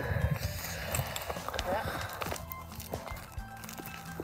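Laughter and voices trailing off, then faint footsteps and phone handling on desert ground while a person walks with the camera.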